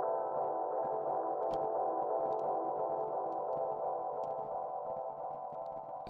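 A sustained, held keys chord from an electronic track, cut sharply above and below by EQ so it sounds narrow and filtered, with delay on it. It fades slightly towards the end.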